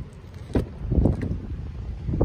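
Driver's door of a Volvo S60 sedan being opened: a short knock about half a second in as the latch releases, then a heavier knock about a second in as the door swings open, over wind rumbling on the microphone.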